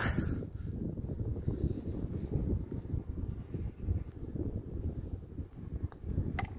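Wind buffeting the microphone: an uneven low rumble that rises and falls throughout.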